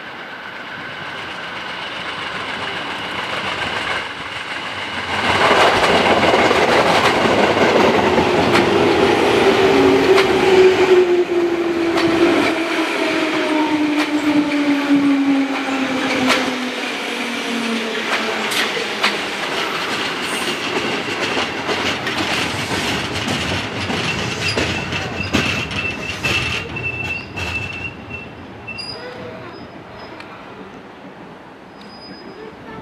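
A JR 205 series electric commuter train approaches and runs past slowly as it pulls into the station. It grows louder for about five seconds, then jumps to full level as the cars reach the microphone. Wheels clack over rail joints, a motor whine falls steadily in pitch as the train slows, and a thin high squeal runs through the later part.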